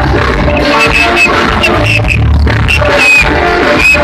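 A live band playing loud amplified music, with heavy bass and sustained high synth-like tones over it.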